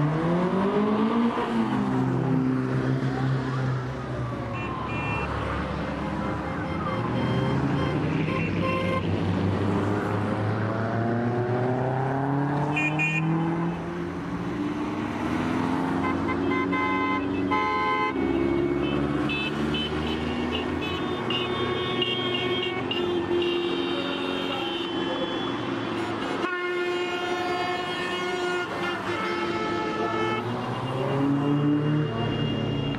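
Car engines revving, their pitch gliding up and down, with car horns tooting at times in the second half.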